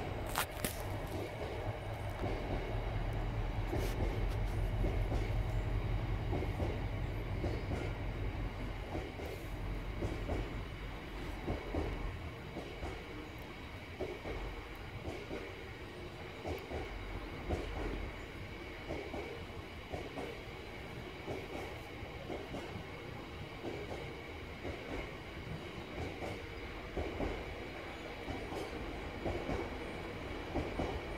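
A freight train of Drax biomass hopper wagons rolling past, with a steady run of short clicks from the wheels. A deep rumble is heaviest for the first dozen seconds, then eases.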